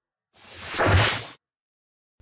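A whoosh sound effect that swells up over about half a second and then cuts off sharply, an editing transition on the intro title card.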